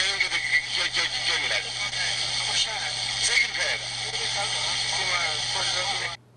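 A man's interview dialogue, a question and a short answer, recorded poorly over a steady hiss and low hum.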